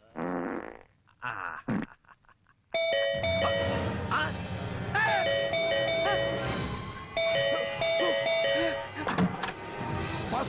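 A man's brief vocal sounds, then from about three seconds in a bright electronic chime tune plays in repeated phrases, like a musical doorbell, over a fuller musical backing in the film's soundtrack.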